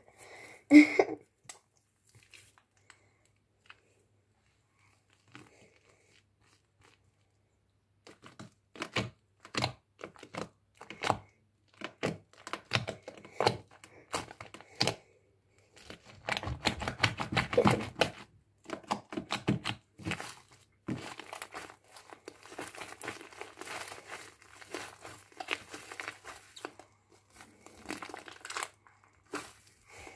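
Foamy slime mixed with shaving foam being squeezed, kneaded and pulled apart by hand: wet crackling, popping and tearing sounds. They start about eight seconds in, sparse at first, then come thick and nearly continuous through the second half.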